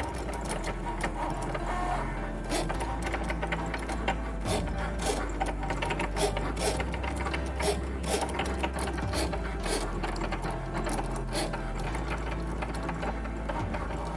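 Cricut cutting machine cutting vinyl on its mat: the carriage and roller motors whir in quick stop-start movements, with frequent small clicks, at a steady level.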